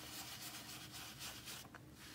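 Faint, soft scrubbing of an ink blending tool rubbed over a cloud stencil onto cardstock, easing off near the end.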